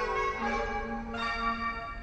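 Station platform chime melody from loudspeakers: a short bell-like tune of held notes, about two a second, which ends at the close.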